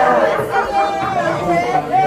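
A crowd's overlapping voices: many people talking at once in a room, none standing out.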